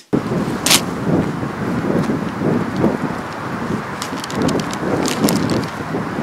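Wind rumbling on the microphone, with uneven footsteps and a few sharp clicks, the loudest click about a second in.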